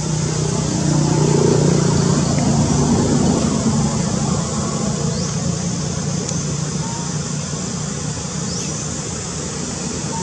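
A passing motor vehicle: a low engine hum that swells over the first few seconds and then fades, over steady road noise.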